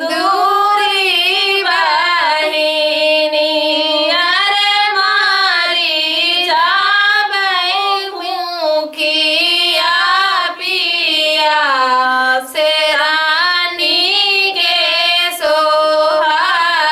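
Two women singing a suhag vivah lokgeet, a North Indian wedding folk song, together in unison and unaccompanied, in long phrases broken by short breath pauses.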